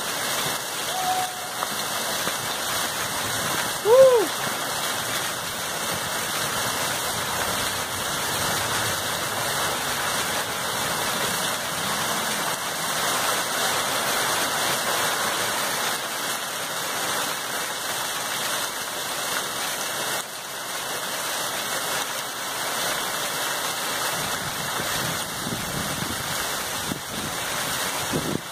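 Heavy rain falling steadily, with water gushing off the roof and splashing onto the pavement. A brief loud call about four seconds in.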